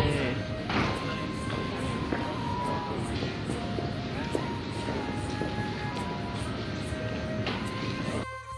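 Background music with slow, long-held notes, over a steady rumble of train and platform noise.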